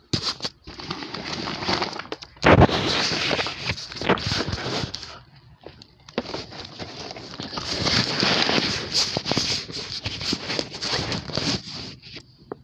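Handling noise on a phone's microphone: fingers rub and scrape over it and the phone is bumped about while it is held and moved. It gives a dense rustling crackle with many sharp clicks, and the heaviest bump comes about two and a half seconds in.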